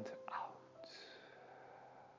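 Faint whispery breath sounds from a person: a short breathy one about a third of a second in and a softer one near the middle, over quiet room tone with a low hum.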